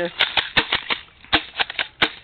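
Airsoft shotgun clicking and clacking as it is worked to clear its ammo: a quick run of about ten sharp clicks, the loudest a little past the middle.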